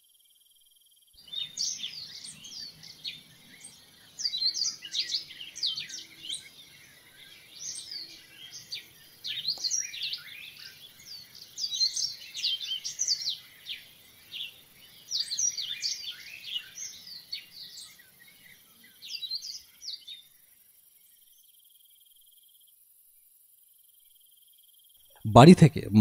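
Nature-ambience sound effect of many quick, high chirping calls, irregular and sliding in pitch, which start about a second in and stop about twenty seconds in.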